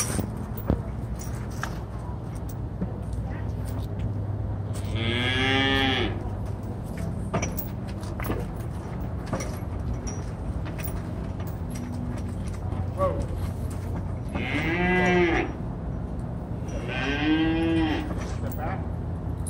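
Cattle mooing three times, each call about a second long and rising then falling in pitch; the first comes about five seconds in, the other two close together near the end.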